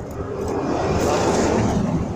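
A motor vehicle passing by: a rushing sound that builds to its loudest around the middle and begins to fade near the end.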